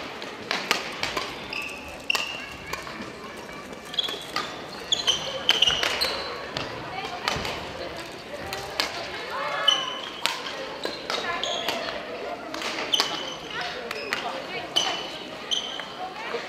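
Badminton play in a gym: sharp clicks of rackets hitting shuttlecocks, scattered irregularly, and short high squeaks of shoes on the wooden floor, over the voices of people in the hall.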